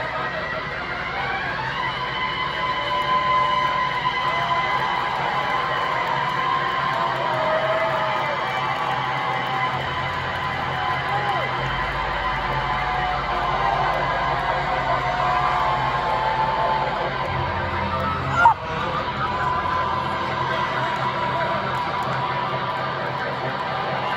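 Amplified electric guitar and bass holding long, droning notes with no drum beat, the bass stepping to a new note a few times. A club crowd shouts and cheers over it. One sharp loud bang comes about eighteen seconds in.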